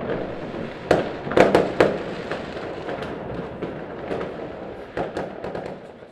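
Fireworks going off: four loud bangs between about one and two seconds in, then scattered smaller pops and crackles, and another bang about five seconds in.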